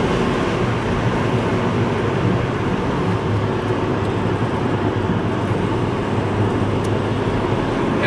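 Steady car engine hum and tyre-on-road noise inside the cabin of a moving car.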